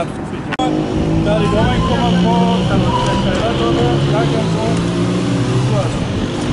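Street noise dominated by a motor vehicle's engine running steadily close by, with men talking over it; the sound cuts out for an instant about half a second in.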